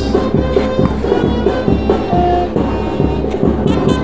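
Music playing.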